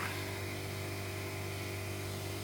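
Steady low mechanical hum with a faint hiss from a running appliance, holding an even level throughout.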